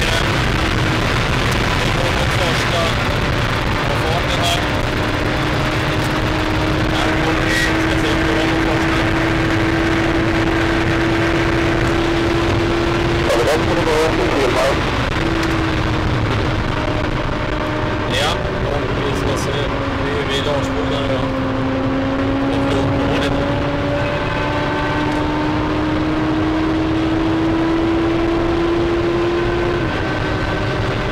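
Inside a Saab 9-5 Aero at high motorway speed: a loud, steady rush of wind and road noise with the car's engine and drivetrain humming under it. The hum's pitch dips slightly past the middle, then climbs again, and a few short clicks come through.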